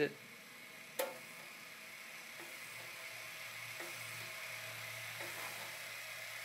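Monoprice Maker Select Mini 3D printer's Z-axis stepper motor raising the print head: a steady low motor hum that slowly grows louder. A single click about a second in, from the control knob being pressed.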